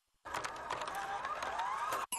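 A transition sound effect: a fast, dense mechanical clicking with a rising whine through it, starting about a quarter second in.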